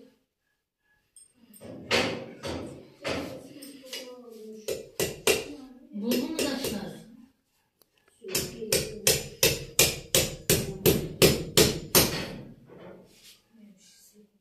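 A hatchet striking a plastered wall, chipping into it. Scattered blows come first, then a steady run of about three strikes a second that grows louder before stopping near the end.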